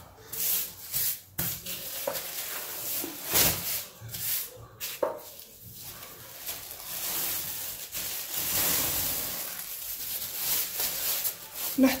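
Thin plastic film rustling and crinkling in uneven bursts as it is smoothed over and then peeled off a rolled-out sheet of shortbread dough.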